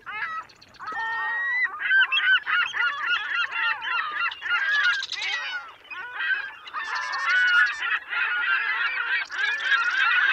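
A flock of geese honking, many calls overlapping, with a short lull about six seconds in.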